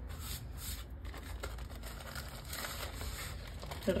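Baking paper rustling and crinkling faintly as hands fold it over to roll up a sheet of puff pastry.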